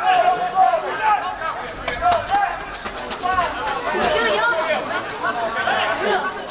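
Indistinct shouts and chatter from several voices, with no clear words.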